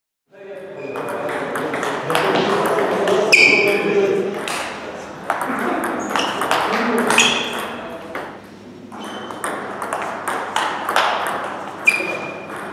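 Table tennis rally: a plastic ball clicking off bats and the table in quick succession, with one player blocking on the backhand with medium pimpled OX rubber, and voices in a large hall. The sound starts just after the opening silence.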